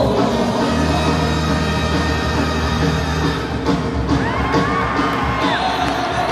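Live brass band music, with low held notes in the first half. A high call that rises and falls sounds over it near the end.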